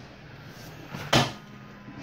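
A single sharp knock a little past a second in, with low room noise around it.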